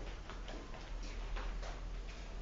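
Light, irregular footsteps on a concrete floor, a few soft ticks a second, over a steady low hum.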